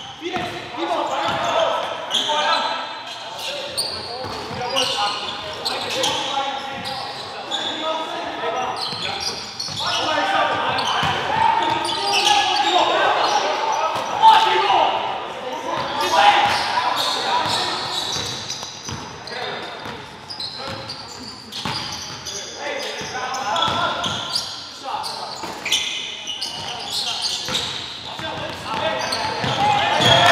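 Basketball being dribbled on a gym's hardwood court during live play, with short sharp bounces, under players' voices calling out.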